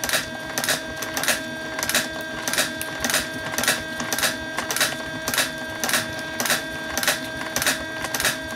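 Mechanical turn counter on a 3D-printed coil winder clicking once for every turn of the spinning bobbin, an even rhythm of about three clicks a second, over a steady hum.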